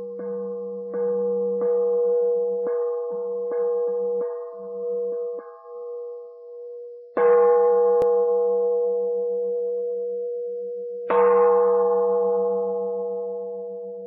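A metal bowl bell (singing bowl) struck repeatedly, each strike ringing on in a clear held tone. There are about seven quicker strikes in the first five seconds, then two louder strikes about four seconds apart. Each of the last two rings out long with a slow wavering hum and fades away at the end.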